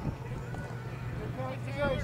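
Faint distant voices calling out over a steady low hum, with no distinct impact sound.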